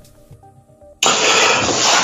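Quiet background music with soft sustained notes, then about halfway through a sudden loud, breathy rush of air into a close microphone, lasting about a second: a speaker's deep breath just before speaking.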